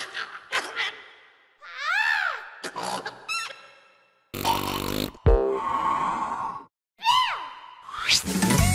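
Cartoon character vocal noises and sound effects in short separate bits: a rising and falling vocal glide, a few quick chirps, a loud sudden sound about halfway, and a falling whistle-like glide near the end.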